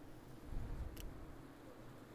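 Wind buffeting the microphone in a low rumble about half a second in, over faint rushing river water, with one light click about a second in.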